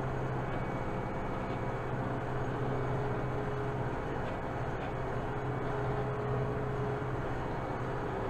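Kubota M7060 tractor's four-cylinder diesel engine running at a steady working speed, heard from inside the cab as the tractor drives across a field: an even, unbroken drone with a low hum.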